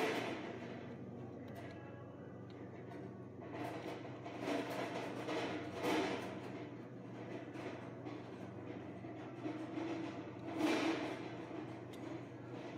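Hands rustling and twisting electrical wires and a plastic wire nut at a metal junction box, in a few bursts of handling noise, over a steady low hum.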